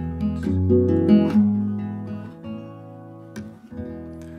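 Solo acoustic guitar: a few chords strummed in the first second or so, then left to ring and fade away.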